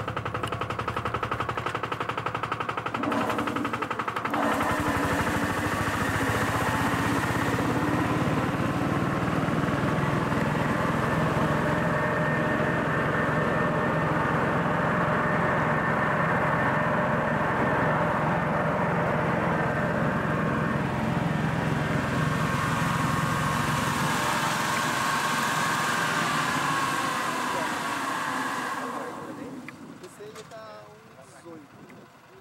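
Tractor-drawn crop sprayer running at its highest pressure setting, a steady loud drone of engine and spraying gear with a high whine over it. It builds about four seconds in and fades near the end.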